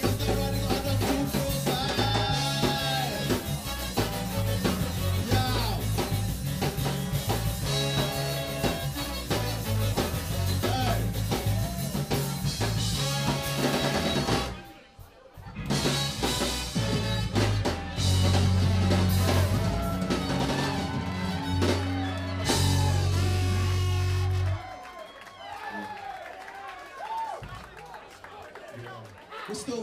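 Live ska band playing, with drums, bass, guitar and horns. The music drops out briefly about halfway, comes back with long held bass-heavy chords, then stops abruptly a few seconds before the end, leaving voices.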